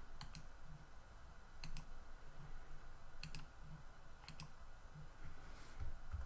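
Computer mouse button clicking: four pairs of short sharp clicks spaced about a second and a half apart, over a low room hum.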